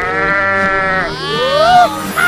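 Cartoon bleating sound effect in two calls: the first held for about a second and falling away at its end, the second shorter and rising in pitch.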